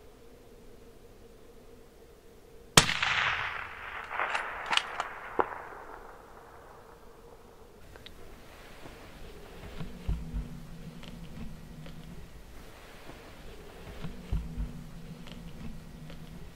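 A single loud rifle shot about three seconds in, its report rolling away for a few seconds. Several sharp clicks follow over the next couple of seconds.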